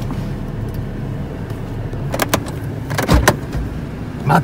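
Car engine idling, heard from inside the cabin as a steady low hum. A few sharp clicks come about two seconds in, and a knock with a dull thud about a second later.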